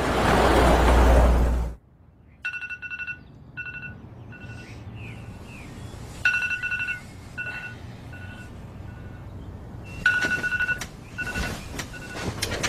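Smartphone alarm beeping in repeated short bursts of a steady two-pitch electronic tone, with some rustling near the end. Before it, for the first couple of seconds, a loud rising rush of noise with a deep low end cuts off abruptly.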